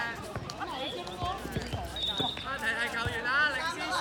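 Dodgeballs thudding on a hard outdoor court several times, mixed with players' shouts and calls.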